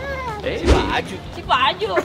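Voices talking playfully with a small child, with one high-pitched, wavering voiced sound near the end and music underneath.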